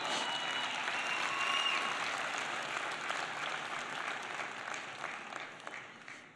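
A congregation applauding steadily, dying away near the end.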